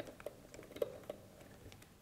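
Faint, scattered small clicks of a screwdriver turning the screws that fasten a lens mount onto a ZEISS CP.3 cine lens, metal on metal, about five ticks spread over two seconds.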